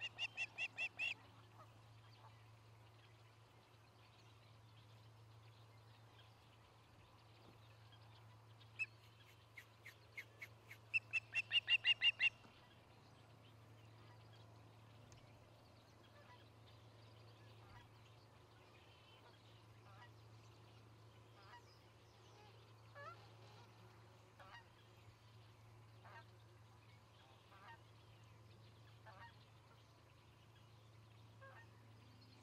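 Osprey calling in two series of rapid, high, whistled chirps. One comes right at the start, and a louder one about nine to twelve seconds in grows louder toward its end. Later only faint scattered chirps are heard over a low steady hum.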